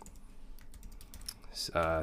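Typing on a computer keyboard: a quick run of keystroke clicks.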